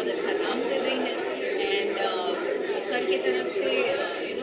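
Chatter: several people talking at once, with no one voice standing out clearly.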